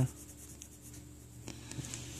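Mechanical pencil scratching faintly on paper as lines are sketched.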